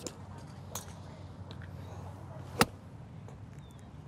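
A golf wedge striking a ball off a driving-range mat, heard as one sharp click about two and a half seconds in.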